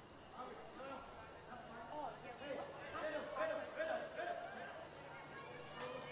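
Faint shouts and calls of women's football players on the pitch, rising and falling in bursts, with one sharp knock near the end.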